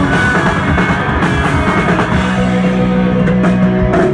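Punk rock band playing live and loud: electric guitar, bass guitar and drum kit, with long held notes in the second half.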